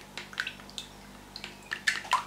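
Thick egg-and-cream batter being stirred and scraped with a silicone spatula in a glass bowl, giving short, irregular wet squelches that come more often and louder near the end.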